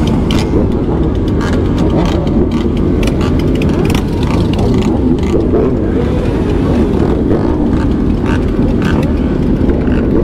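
Many motorcycles, mostly sport bikes, running together at low speed: a loud, steady mass of engine noise with scattered short, sharp sounds over it.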